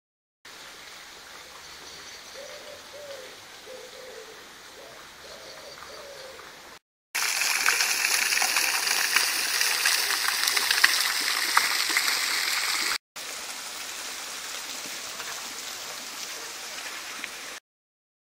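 Fountain jet splashing into its stone basin, the loudest sound, in a take that starts and ends abruptly. Before it, a bird gives a handful of low hooting notes over quiet outdoor ambience.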